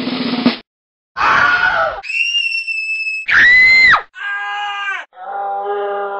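A drum roll stops about half a second in. After a short gap come five different people's screams, cut back to back in quick succession: the second and third are high-pitched and the loudest, and the last is lower.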